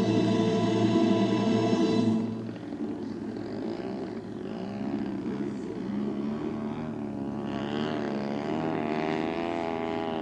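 Choir music ends about two seconds in, and then a model aerobatic airplane's engine runs on alone, its pitch wavering up and down as it flies.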